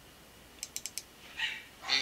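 Computer mouse button clicked about four times in quick succession: short, quiet, sharp clicks, as a file is double-clicked open.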